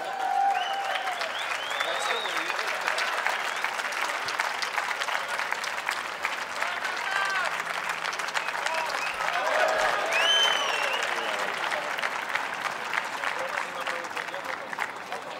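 Audience applauding steadily throughout, with a few voices calling out above the clapping.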